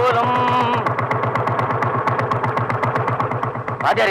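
Motorcycle engine idling with a rapid, even beat, after a short pitched tone in the first second.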